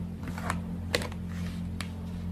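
Tarot cards being handled: a few sharp, separate clicks of card against card, over a steady low hum.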